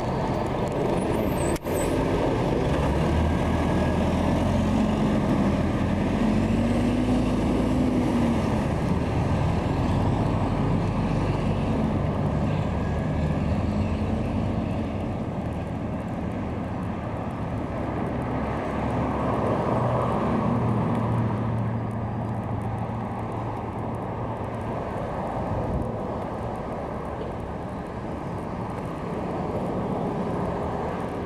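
Motor vehicle driving: a steady rumble of engine and road noise, with the engine note rising and falling. A brief click and dropout comes near the start.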